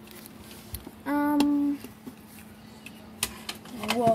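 A child's voice holding one steady note for under a second, about a second in, with a click in the middle of it. Light taps follow, and a short falling vocal sound comes just before the end, over a faint steady low hum.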